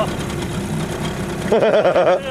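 A boat's outboard motor running steadily at low revs. A voice breaks in near the end.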